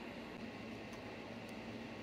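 Low steady hiss of room tone, with two faint ticks about a second in and half a second later.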